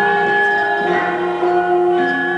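Gamelan ensemble playing: struck bronze metallophones and gongs, each note ringing on, with new strokes coming about once a second.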